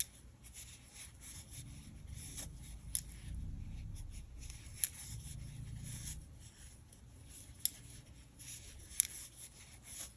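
Soft rubbing and rustling of super bulky yarn against a crochet hook as half double crochet stitches are worked, broken by four small sharp clicks.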